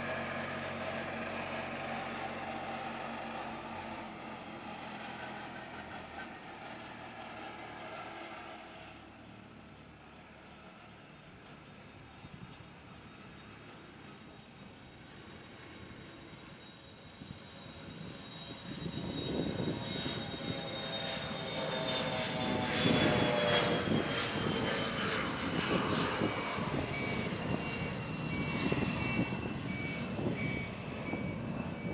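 Bombardier Challenger 604 business jet on its takeoff roll, its two rear-mounted GE CF34 turbofans at takeoff power. A steadier jet whine in the first third fades away, then the engine noise swells loud from about two-thirds of the way in, its whine falling in pitch as the jet passes.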